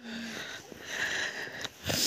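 A person breathing and sniffing close to the microphone, soft breaths with a louder one near the end.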